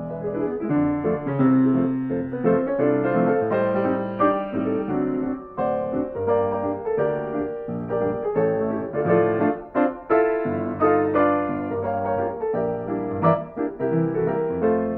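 A Yamaha grand piano playing a lively fox-trot by itself, its keys driven by MIDI from a scanned Ampico reproducing-piano roll, with the roll's dynamics emulated by software. Busy chords and melody run without a break, with a steady dance rhythm.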